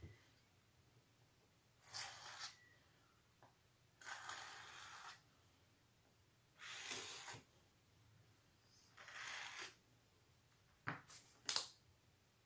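Faint hand-handling of a DIY planar tweeter's parts: four separate rubbing, scraping strokes, each under about a second, as the perforated magnet plate and foil laminate are worked and pressed together. Near the end come three light clicks.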